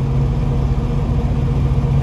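A diesel engine running steadily with a low, even drone that does not change in pitch or level.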